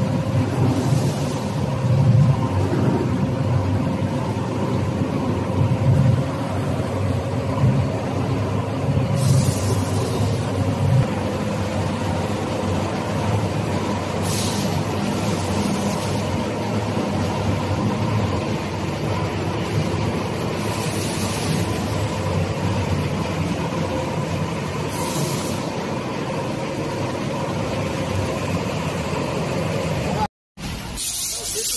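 Pulp-moulding factory machinery running with a steady hum over a low rumble, broken by a few short hisses of released air at irregular intervals.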